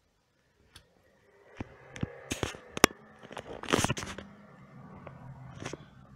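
Handling noise from a camera phone being moved about: near silence for about a second, then rustling and scraping with several sharp clicks, the loudest rustle a little before four seconds in.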